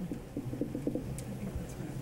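Faint, muffled voices away from the microphone, a low murmur in the room.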